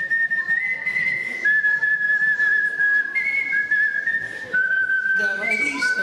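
A girl's art whistling through a stage microphone: a melody of long held notes, each one clear tone, stepping up and down between a few pitches. About five seconds in, lower tones come in underneath the whistle.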